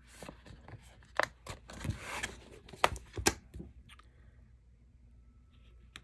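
Paper sticker sheets handled and a sticker peeled off and pressed down: rustling with a few sharp clicks and taps, stopping about four seconds in.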